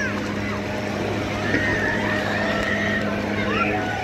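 A steady, low mechanical hum of a running motor, which stops just before the end.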